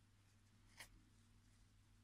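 Near silence: room tone with a steady low hum, and one faint brief rustle a little under a second in, from hands handling the crocheted yarn and hook.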